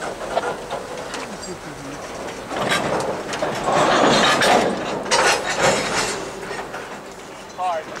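Freight cars rolling past close by, their steel wheels clattering irregularly over the rail, with louder stretches of clatter in the middle.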